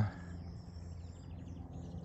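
Faint rural outdoor ambience: a low steady rumble with a soft, rapid high-pitched trill from a small wild creature coming in under a second in.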